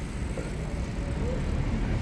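Steady outdoor background noise: a low rumble under an even hiss, with no distinct event.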